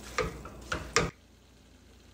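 Tongs tossing sauced lo mein noodles in a pan: three sharp clicks in the first second over a faint sizzle, then the sound drops away to near quiet.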